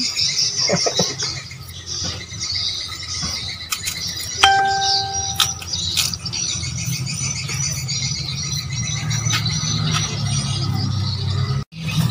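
Birds chirping steadily in the background over soft handling sounds of young mangoes being peeled and sliced by hand with knives. About four and a half seconds in, a single clear steady tone sounds for about a second, and a low hum comes in after the midpoint.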